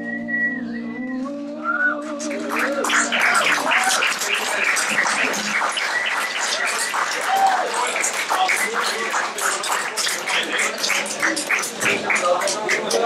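An acoustic guitar's final chord ringing out and fading, then audience applause starting about two seconds in and continuing, with whistles from the crowd.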